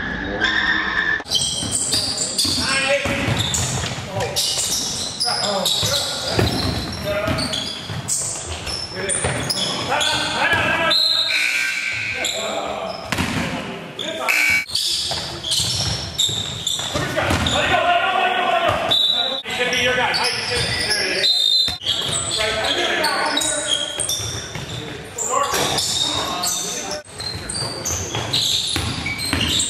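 Basketball game sounds in a gymnasium: a ball bouncing repeatedly on the hardwood floor, mixed with players' voices calling out across the court.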